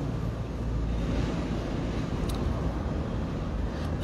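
Steady low rumbling background noise without any clear pitch or rhythm.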